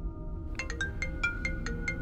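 Mobile phone ringing with an incoming call: a quick run of bright, chiming ringtone notes, several a second, starting about half a second in, over a low drone.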